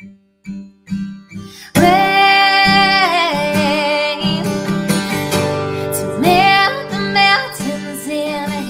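A woman singing with her own acoustic guitar: a few short strums with gaps, then about two seconds in she comes in loud on long held notes, the first with vibrato, over strummed guitar.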